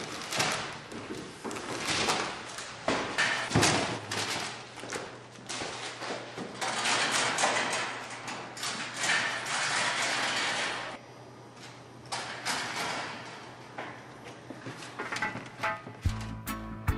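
Irregular thumps and knocks over a steady low hum, with a quieter stretch about eleven seconds in.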